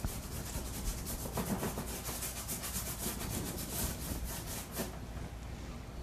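Paint being scrubbed onto a stretched canvas in quick, repeated rubbing strokes, stopping about a second before the end.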